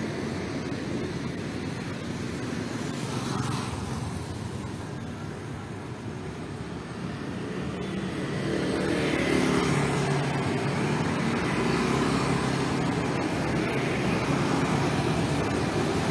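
Road traffic passing on a city street, cars and motorbikes, their engines running steadily. The motor sound grows louder about halfway through as vehicles pass close by.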